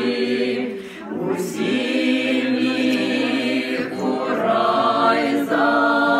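Small group of women's voices with one man's voice singing a cappella, with long held notes and a short breath about a second in.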